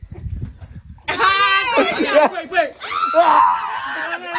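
A man gives a loud, high-pitched scream starting about a second in, as his ear is bitten, then more shrill cries and laughing near the end.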